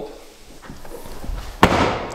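A car tailgate being shut: one sharp slam about one and a half seconds in, after some low handling rumble.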